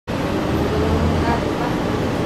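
Transit bus heard from inside the passenger cabin while driving: a steady engine hum and road and tyre noise.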